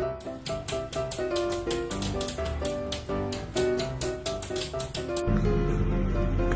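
Background music with a stepping melody, over rapid, irregular clicking taps, several a second: a small dog's claws pawing against a glass door. The taps stop about five seconds in.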